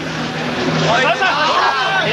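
Several voices talking or shouting over one another, over a steady low hum.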